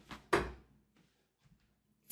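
A steel-tip 95% tungsten dart striking the dartboard once, a short sharp hit about a third of a second in that dies away quickly.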